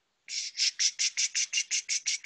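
A bird chirping: a rapid run of short high chirps, about five a second.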